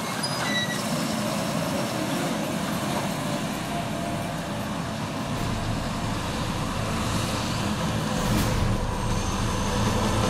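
John Deere 7530 tractor's six-cylinder diesel engine running steadily under load while pulling a seed drill through the field, growing louder near the end as it comes closer.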